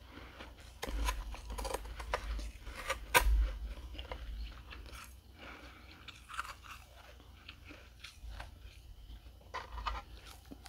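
Close-up crunching and chewing of dry, flaky freezer frost eaten off a metal spoon: dense crunches in the first half, loudest about three seconds in, then sparser, quieter crunches.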